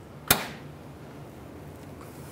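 A single sharp metallic click about a third of a second in, as locking pliers snap shut onto a rusted ground bolt.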